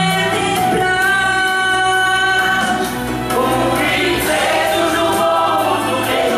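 Amateur mixed choir singing over backing music, holding long sustained notes, with a fuller, brighter passage from about four seconds in.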